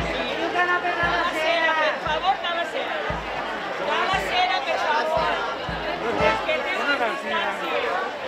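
Several people chattering and calling out to one another in Catalan, telling the walkers to get up on the pavement and keep their distance. Low thumps come about once a second underneath.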